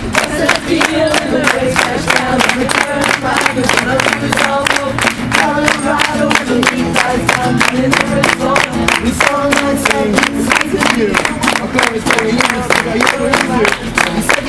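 Several voices singing a song together over steady hand claps that keep the beat, a few claps a second.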